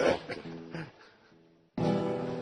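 Acoustic guitar: a few single notes ring out and fade, then a full strummed chord comes in near the end. A short vocal sound is heard at the very start.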